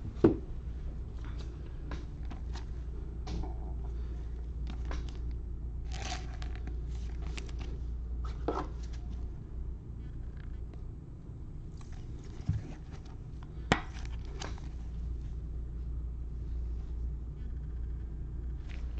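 Trading cards handled with gloved hands: a card slid into a plastic sleeve and a rigid clear plastic toploader, with soft scrapes and rustles and a few sharp clicks, the sharpest just after the start and about 14 seconds in. A steady low hum runs underneath.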